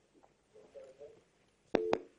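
A brief telephone busy/disconnect tone on a phone line, one steady beep of about a quarter second near the end, the sign of the caller's line dropping off the call.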